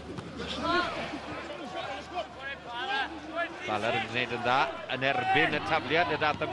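Several men shouting at once around a rugby lineout: players' calls and spectators' shouts overlapping, over a low steady hum.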